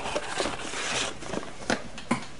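Cardboard miniatures box being handled and slid off a desk mat: a rubbing, sliding rustle with a few light knocks.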